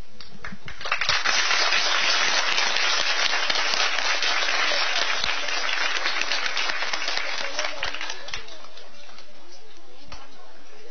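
Audience applauding: the clapping starts about a second in, is loudest early on, and slowly dies away before the end.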